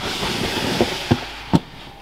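Plastic snake tub being slid shut in a Herpxotic rack: a scraping slide of plastic on plastic lasting about a second, then a few sharp knocks, the loudest about a second and a half in.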